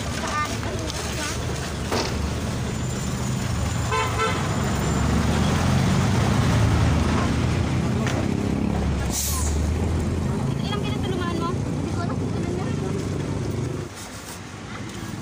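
Motorcycle tricycle engine running close by with a low rumble that grows louder in the middle, under people talking, with a short horn toot about four seconds in.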